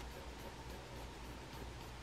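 Faint, steady scratching of a graphite pencil shading and cross-hatching on paper, under a low background hum.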